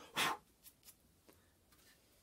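A single short breath-like puff, then a few faint light clicks as a small wooden toy wheel is handled.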